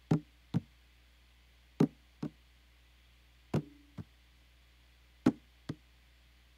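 A sparse percussion track playing back: pairs of short drum hits about half a second apart, repeating roughly every 1.7 seconds, the first hit of each pair with a brief ringing pitch.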